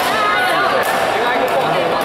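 People talking: casual conversation with other voices in the background.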